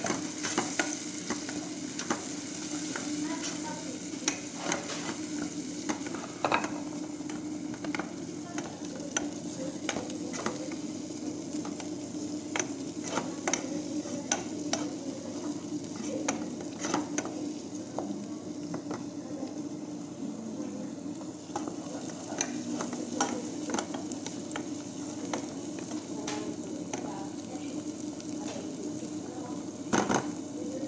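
Chopped onion and green herbs sizzling in hot oil in a nonstick saucepan while a wooden spatula stirs them, its strokes knocking and scraping on the pan many times. A steady low hum runs underneath.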